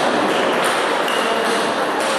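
Steady din of a table tennis hall with ping-pong balls ticking on tables and bats, and a brief high tone about a second in.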